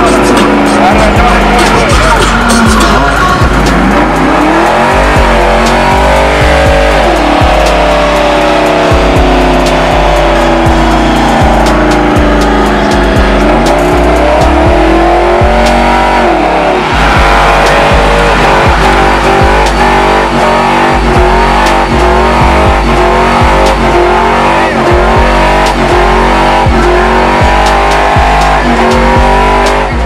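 Pickup truck doing a burnout: the engine revs up and down at high speed while the rear tyres spin and squeal. Music with a heavy, steady bass beat plays over it.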